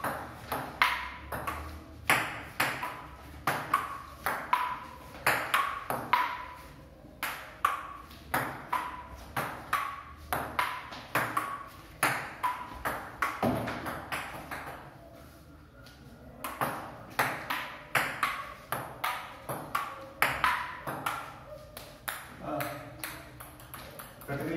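Table tennis rally: the ball clicking off a wooden table and the players' paddles about twice a second, each click ringing briefly. The hits pause for a second or so about two-thirds of the way through, then start again.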